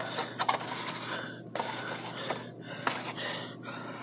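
Soft rubbing and scraping handling noises with a few light clicks and knocks.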